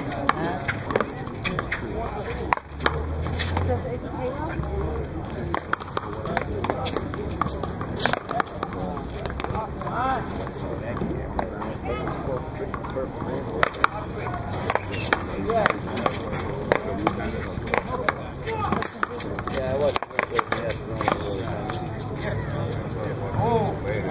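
Paddleball being played: irregular sharp smacks of the rubber ball struck by paddles and rebounding off the concrete wall, with sneakers scuffing on the court. Players' voices chatter in the background.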